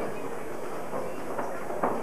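Ambient sound of an amateur boxing bout in a hall: a steady noisy murmur, with two short thuds near the end.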